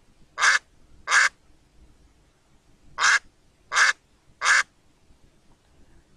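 Recorded duck quacking in short sharp calls: two quacks, a pause of about two seconds, then three more in quick succession.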